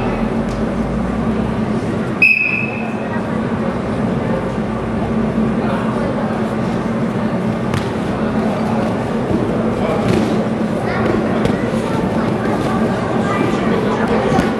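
A single short, high referee's whistle blast about two seconds in, over the steady chatter of spectators in a hall.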